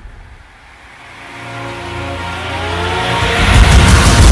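Trailer sound effect: a pitched, engine-like whine that climbs in pitch and swells in loudness over about three seconds, with a rushing noise building over it and peaking near the end.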